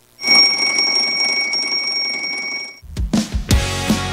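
An alarm clock bell rings steadily for about two and a half seconds, then cuts off suddenly. Theme music with a drum beat starts right after.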